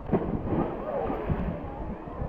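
Wind buffeting the camera microphone in uneven rumbling gusts, with faint distant voices shouting.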